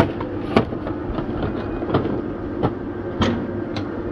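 Shop-floor noise: a steady hum with about six sharp, irregular clacks and rattles.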